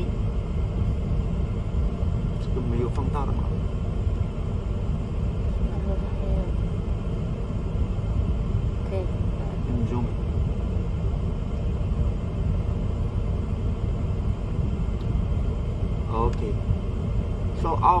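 Steady low rumble inside a car's cabin from the running vehicle.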